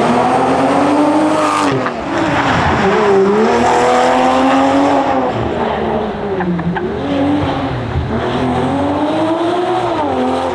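2019 Toyota Supra GTS's turbocharged 3.0-litre inline-six being driven hard. The engine note climbs under acceleration and drops several times as the driver lifts and shifts gears for the corners.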